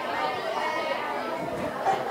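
Many students' voices talking at once, a steady overlapping chatter in which no single voice stands out, as each one tells the same story aloud at the same time.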